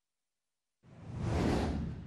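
Whoosh sound effect for an animated title-card transition, coming in out of silence about a second in, swelling to a peak and then easing off.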